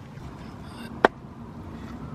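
A single sharp click about a second in: a plastic wire clip on the front suspension strut snapping as it is pried open with a small pick.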